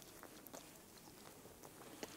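Faint sounds of a person biting into and chewing a crusty baguette sandwich, heard close on a clip-on microphone: a few soft mouth clicks over near silence.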